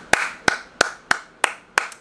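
One person clapping her hands in slow applause, sharp single claps at about three a second.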